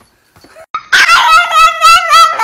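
A chihuahua making high-pitched, drawn-out whining yowls in several wavering pulls, starting about three-quarters of a second in after a quiet start.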